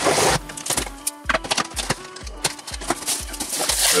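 Scissors slicing through the packing tape on a cardboard box and the flaps being opened, with short cutting and rustling sounds, over background music with a steady beat.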